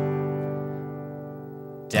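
Acoustic guitar G major chord ringing out and slowly fading after a strum, then a fresh downstroke strum on the same chord near the end.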